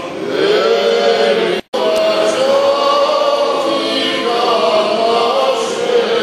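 Unaccompanied voices chanting an Eastern Orthodox liturgical hymn in long, held phrases. The sound cuts out completely for an instant a little under two seconds in, then the chant carries on.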